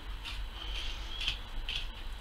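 Faint sounds of a knife cutting through a skinned hare carcass on a wooden block, over a low steady hum.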